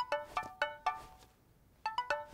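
Cartoon tablet ringtone for an incoming call: a quick melody of short, plucked-sounding notes that fade. The same phrase starts again near the end.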